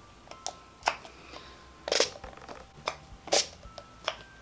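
A Wet n Wild matte finish setting spray pumped at the face in about five short spurts, the strongest about two seconds in and near the end. The nozzle is broken and barely works.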